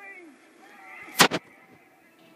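Two sharp explosion sound effects in quick succession about a second in, from a cartoon battle soundtrack played through a television's speaker, just after a man's shouted command and screaming.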